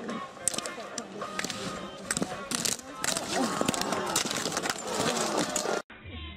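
Voices over background music, with several sharp knocks or clicks; it all cuts off abruptly near the end.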